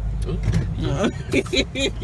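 Steady low rumble of a car's cabin while riding. About a second in, a woman laughs in short repeated bursts over it.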